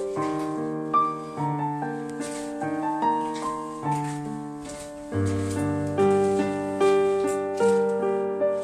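Background piano music: slow, gently played notes and chords, each struck and left to fade, about one a second.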